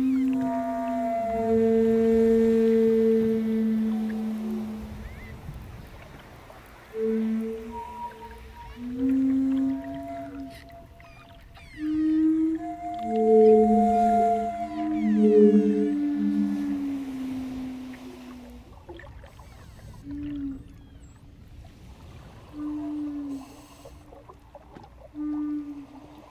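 Wooden Native American-style flute playing slow, low notes, each held for a second or several, in phrases with pauses between them. A long note opens the passage, and near the end it thins to a few short, quieter notes.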